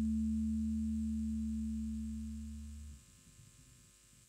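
The song's last chord on guitar and bass ringing out as a low sustained tone and slowly fading. It drops away about three seconds in, leaving only faint hiss.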